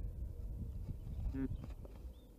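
Female osprey giving a short low grunt about one and a half seconds in, straining as she lays an egg, over a low rumble with a few sharp knocks from the nest.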